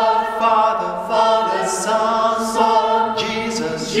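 Mixed a cappella vocal quintet, two women and three men, singing a hymn in close harmony without accompaniment, its held chords changing every second or so.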